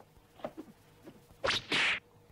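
A rope swung as a whip, lashing through the air in two sharp swishes near the end, the second longer than the first, after a few faint light sounds.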